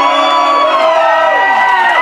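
Club audience cheering and whooping, several long drawn-out shouts overlapping at once.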